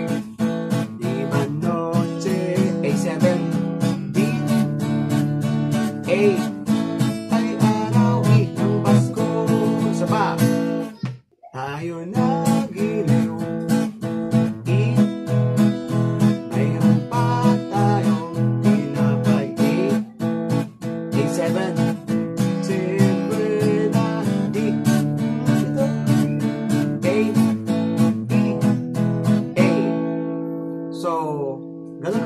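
Acoustic guitar strummed in steady rhythm, working through the major-key chords E, A, A7 and D. The strumming breaks off for a moment about eleven seconds in, then carries on.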